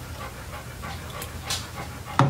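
A person gulping a drink from a can, quiet swallows and breaths with a few faint clicks, the sharpest about one and a half seconds in.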